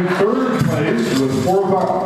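Speech only: a man's voice talking into a microphone.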